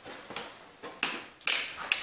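A few short, irregular clicks and taps from handling in the shop, with a brief scrape about one and a half seconds in.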